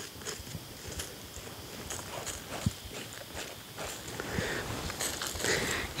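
Dry soil being scraped and sprinkled with a stick and gloved hands over a buried wild dog trap: a run of small scratches, taps and soft rustles, with one sharper tick a little before halfway.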